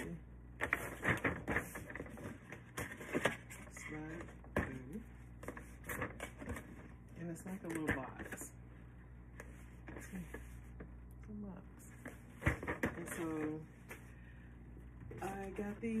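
Paperboard gift box being folded and handled: scattered taps, clicks and rubbing as the flaps are pressed down and a tab is slid into its slit.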